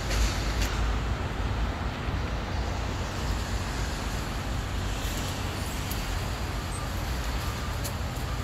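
Steady low rumble of outdoor city background noise, typical of distant road traffic, with a few faint ticks.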